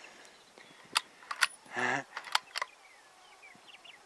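A run of about six sharp clicks over a second and a half, typical of a rifle bolt being worked to chamber the next round after a shot. A brief voice sound falls among them, and faint bird-like chirps come near the end.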